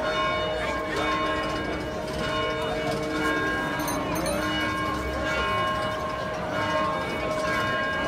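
Bells ringing on and on, their steady tones overlapping, over a murmur of crowd voices.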